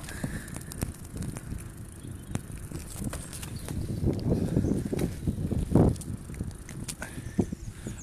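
Bicycle being ridden along a tarmac street: a low tyre-and-road rumble that swells around the middle, with scattered light rattles and clicks from the bike and the handheld phone.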